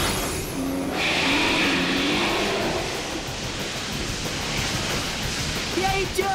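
Cartoon battle sound effects for a Beyblade special attack: a continuous rushing, whooshing noise, with a high warbling tone over it for about the first second.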